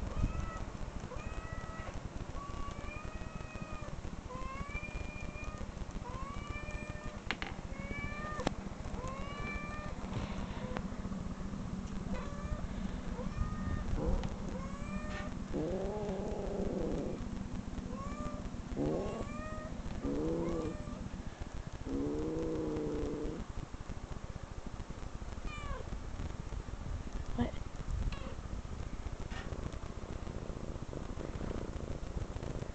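Recorded cat meows played back through computer speakers: a quick run of short meows, more than one a second, then a few longer, wavering meows around the middle, then more short meows.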